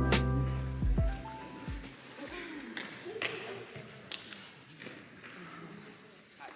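Calm hip-hop background music that fades out over the first two seconds. After it, faint distant voices and a few sharp taps echo in a large hall.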